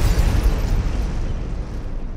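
Cinematic explosion sound effect: the rumbling tail of a deep boom, fading gradually.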